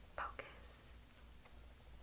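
Faint breathy voice sounds: two short puffs of breath and a soft hiss within the first second, then quiet room tone with a low hum.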